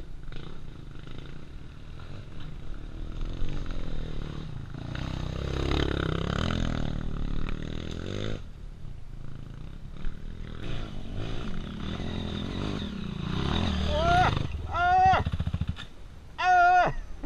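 Four-stroke single-cylinder dirt bike engines idling with a steady low rumble, rising in revs for a few seconds around the middle. Short, high, arching calls come near the end and are the loudest sound.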